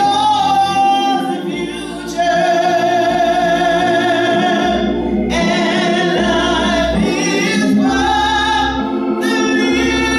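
A woman singing a gospel song solo into a microphone, holding long notes, with a short dip about two seconds in. Organ accompaniment plays low notes underneath.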